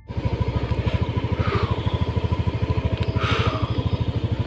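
Motorcycle engine idling with a steady, rapid low putter. Two brief whooshes fall in pitch, about one and a half and three seconds in.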